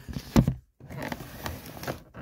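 A cardboard toy box with a clear plastic window being handled and turned on a table: a few knocks near the start, the loudest about half a second in, then rustling and scraping of the box.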